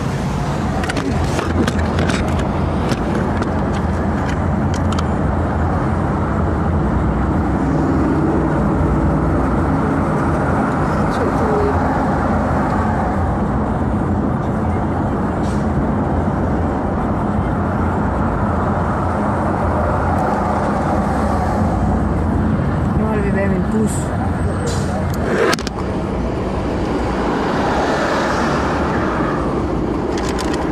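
Steady low engine and road noise heard from inside a moving car's cabin, with one brief sharp sound late on.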